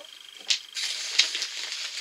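Plastic packaging crinkling and rustling as it is handled, after a single sharp click about half a second in.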